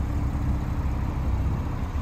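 2017 Porsche 911 Carrera S (991.2) twin-turbocharged 3.0-litre flat-six, fitted with the factory sport exhaust, idling with a steady low hum.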